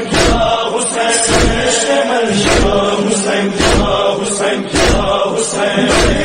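Chanted vocal lament in the style of a noha, with held notes over a steady beat that falls about every two-thirds of a second.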